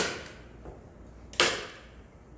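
Sharp clacks from a hand tool working along the edge of a paper-covered panel, two in quick succession about a second and a half apart. Each cuts in suddenly and fades over about half a second.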